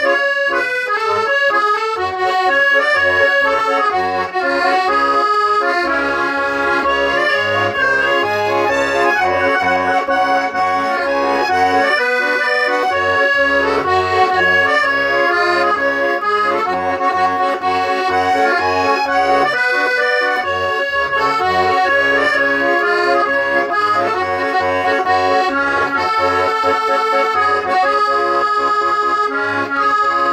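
Chayka M302 button accordion playing a tune: a melody of held and moving notes over a rhythmic accompaniment of low bass notes, with brief breaks in the sound about twelve and twenty seconds in.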